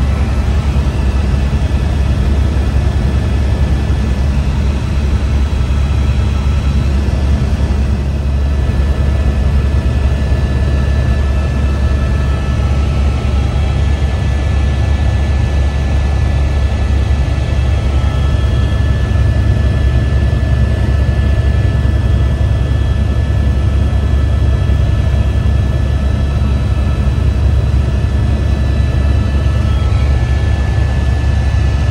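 Steady, loud low engine rumble that does not change, with faint steady higher tones above it.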